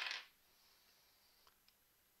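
The hissing end of a spoken word, then near silence with two faint clicks about a second and a half in, as a magnet is handled and taken out of the current balance's magnet holder.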